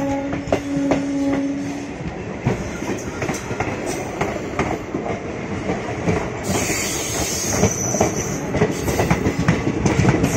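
Two passenger trains passing each other at close quarters: wheels clattering over rail joints and coaches rushing by, with wind on the microphone. A steady tone sounds at the start and stops about two seconds in.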